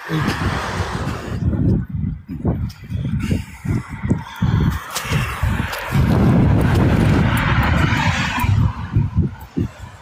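Wind buffeting a phone's microphone outdoors: irregular gusts of rumble, with one longer, steadier gust in the second half.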